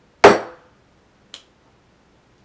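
A single loud, sharp slap of a hand holding a phone coming down hard on a desk, followed about a second later by one faint click.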